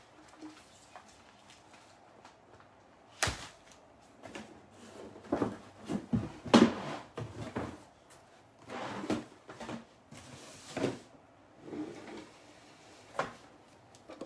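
Scattered knocks, clacks and short rustles of objects being handled and set down in a small room, with the sharpest knock about three seconds in and a busier run of handling sounds in the middle.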